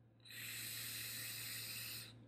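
Long draw on a dual-coil rebuildable dripping atomizer (M-Atty RDA), fused-Clapton coils firing at about 0.35 ohm and 44.5 watts with the airflow wide open. It gives a steady airy hiss that starts about a third of a second in and stops at the end.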